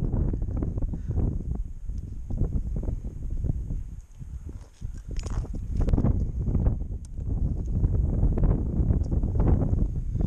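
Wind buffeting the microphone in uneven gusts, easing briefly about four seconds in, with scattered knocks and rustles.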